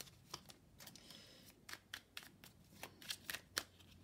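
A small deck of oracle cards being shuffled by hand: a faint, irregular run of soft flicks and snaps as the cards slide and tap against each other.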